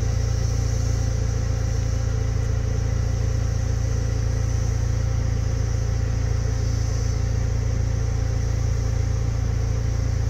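Steady low rumble of a car heard from inside its cabin, with a steady high-pitched hum above it.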